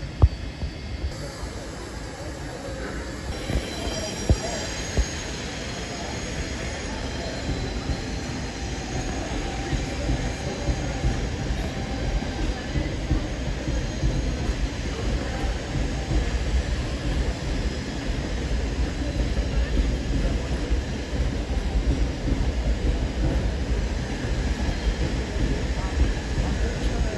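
Tangara double-deck electric multiple unit rolling past on the rails, its wheel and running rumble growing louder as it comes closer. Faint high wheel squeal sounds in the first several seconds.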